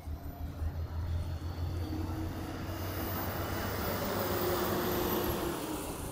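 A road vehicle passing close by: its noise builds for about five seconds, then falls away with a drop in pitch as it goes past.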